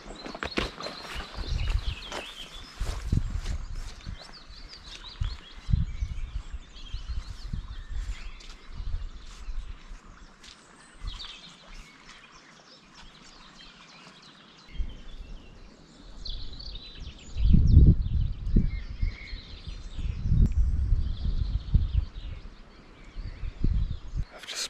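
Birds chirping on and off, over irregular low rumbles of wind gusting on the microphone; the gusts are strongest about two-thirds of the way through.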